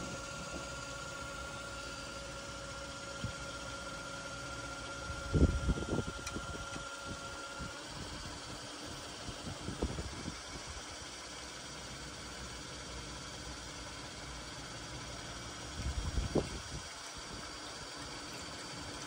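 Printhead washer's pump running steadily with a low hum and a thin whine, pushing cleaning liquid through the printhead nozzles. A few soft low bumps come about five seconds in and again near the end.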